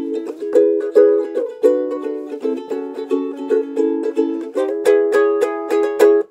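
Ukulele strummed in a steady rhythm of chords as an instrumental song intro, the chord changing every second or two.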